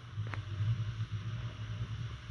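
Low, uneven rumble of a handheld phone microphone being moved and handled, with one faint click about a third of a second in.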